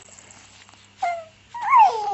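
Two-month-old baby cooing: a short falling coo about a second in, then a louder, longer coo that rises and falls in pitch near the end. These are the early vowel sounds of a baby at the cooing stage, trying to talk.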